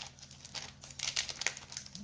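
Plastic trading-card sleeves and toploaders being handled: a crinkling rustle with a run of small irregular clicks and taps.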